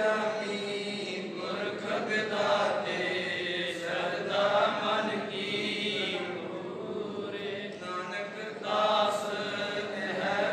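A man's voice chanting Sikh scripture (Gurbani) in a continuous sing-song recitation through a microphone.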